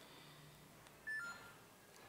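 Near silence broken about a second in by one short electronic beep of two notes, the second a little lower than the first.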